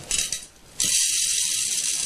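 Small blue silica gel beads pouring from a plastic bottle into a glass dish, making a steady, fine, high rattling patter after a brief lull near the start.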